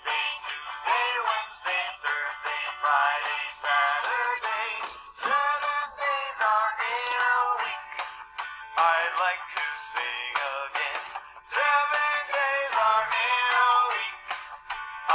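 A children's song playing, with voices singing the days of the week.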